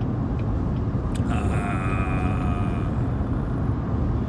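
Steady low rumble of a car heard from inside its cabin, with a faint steady whine for a couple of seconds in the middle.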